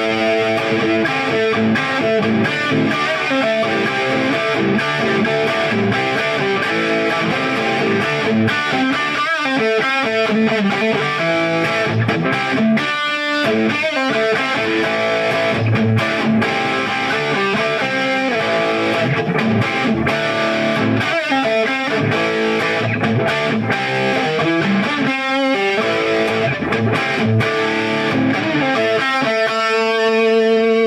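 Gibson SG Standard electric guitar played through an amplifier: a run of picked notes and chords, ending on a chord left ringing.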